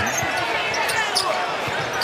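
Basketball being dribbled on a hardwood court, a thump every fraction of a second, over the steady noise of an arena crowd.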